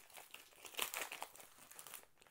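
Foil trading-card pack wrapper crinkling softly as it is torn and peeled open by hand, a little louder about a second in; the pack is sealed tight.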